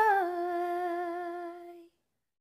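Woman singing unaccompanied, holding one long note that dips slightly in pitch just after the start and then fades away shortly before the end.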